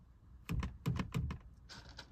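A quick run of light clicks and knocks, about six in under a second starting half a second in, from a cord being worked through the top of a car's side window against the glass and door trim. Softer rustling follows.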